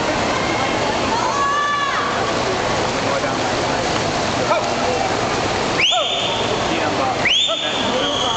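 Spectators cheering and shouting in an indoor pool hall, a dense, continuous noise. Near the end come two loud, shrill whistles, each sweeping quickly up and then holding one high note.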